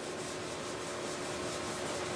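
Whiteboard eraser rubbing across a whiteboard, wiping off marker writing.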